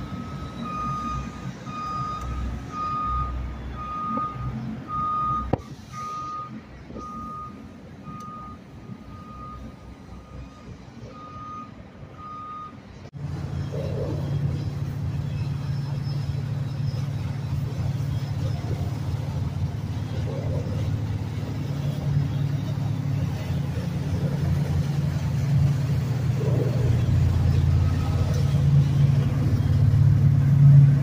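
A backup alarm beeping at one pitch about once a second over a low engine rumble; it stops suddenly at a cut about 13 seconds in. After that, a passing flybridge motor yacht's engines rumble steadily, growing louder near the end.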